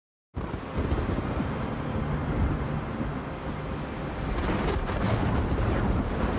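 Deep, continuous rolling rumble of thunder, the sound of a storm. It cuts in abruptly just after the start, and a rising hiss of wind or rain builds over it near the end.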